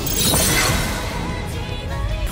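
Anime battle-scene soundtrack: dramatic music with a shattering sound effect in the first half-second.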